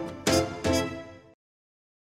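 News channel logo jingle: two short pitched musical hits about half a second apart, the last fading and then cutting off suddenly a little over a second in.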